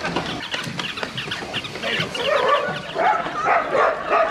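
A litter of puppies yelping and squeaking, many short high cries overlapping, with louder, lower yelps joining in about halfway through.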